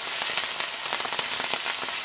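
Broccoli rabe frying in olive oil in a sauté pan over high heat, a steady sizzle full of small crackles, with the greens being tossed with tongs.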